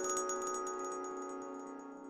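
Short outro music jingle with bright, bell-like chiming notes over held tones, dying away toward the end.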